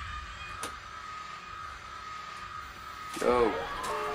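Found-footage horror film soundtrack: a faint, steady high tone under room sound, with a light click about half a second in. Near the end a man says a startled "Oh."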